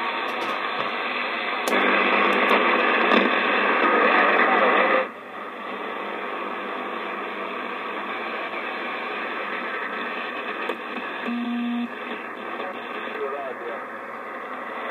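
President Adams AM/SSB CB transceiver's speaker putting out 11-metre band static and hiss with faint, garbled voices of distant stations as the receiver is tuned across channels. The hiss is louder from about two seconds in, then drops sharply about five seconds in. A brief low beep sounds about eleven seconds in.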